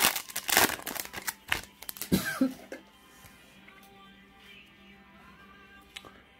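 Plastic foil wrapper of a 2020 Topps Holiday baseball card pack crinkling and tearing as it is ripped open by hand, a dense run of sharp crackles that stops about two and a half seconds in. Faint background music follows.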